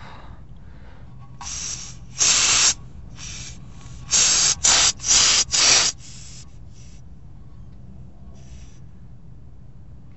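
About seven short bursts of compressed air hissing from a valve on a motorhome's rear air-suspension line, each starting and cutting off sharply, bunched between about one and a half and six and a half seconds in. The owner wonders if this valve is where the air is leaking from.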